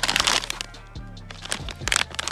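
Plastic snack bag crinkling as it is shaken and pulled open, loudest at the start and again near the end, over background music.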